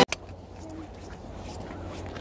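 A single click as the music cuts off, then quiet outdoor ambience with a steady low rumble on the phone's microphone and a faint, brief voice.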